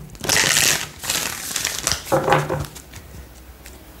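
A deck of oracle cards being shuffled by hand: one brisk burst of cards rattling together, lasting under a second, then quieter rustling as the deck is squared up.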